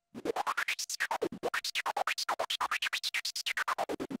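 Output of the AlphaTheta OMNIS-DUO with its Noise colour effect combined with the Transformer beat effect: a hissing noise chopped into rapid, even pulses, about a dozen a second, its brightest band sweeping up and down in pitch.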